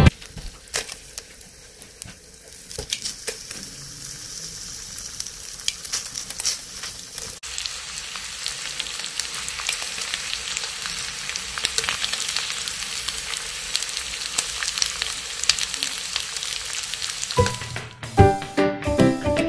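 Slices of boiled silverside corned beef frying in hot oil in a non-stick pan: a crackling sizzle with scattered sharp pops. It is quieter for the first few seconds, then grows louder and denser.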